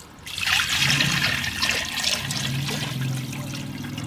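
A stream of milky liquid is poured from an aluminium pot into a clay pot, splashing and trickling steadily. It starts suddenly about a quarter second in.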